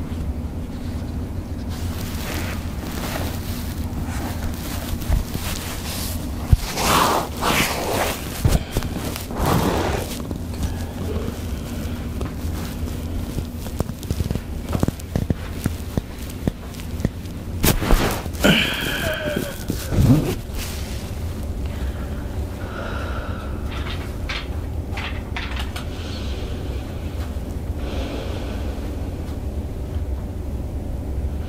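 A vibrating massage device hums steadily and low throughout a chiropractic Y-strap neck-pull adjustment. Over it come several loud breaths and a short groaning voice a little past the middle, with a few faint clicks.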